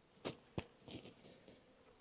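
A few faint, light taps and knocks from beehive equipment being handled.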